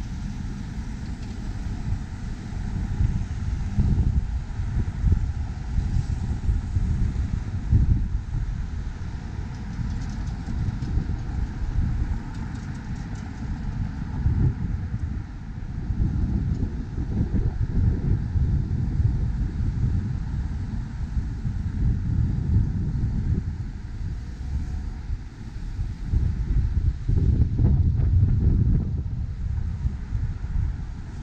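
City street traffic passing through an intersection, with wind buffeting the microphone in uneven gusts.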